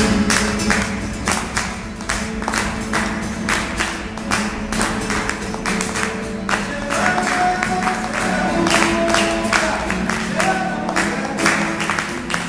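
Nylon-string classical guitar strummed in a fast, steady, percussive rhythm, about three to four strokes a second.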